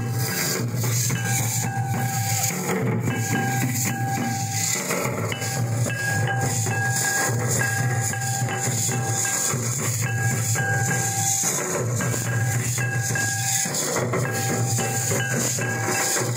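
A troupe of large barrel drums beaten with sticks in a continuous folk rhythm, over a dense jingling rattle, with a held high tone that breaks off and comes back every second or two.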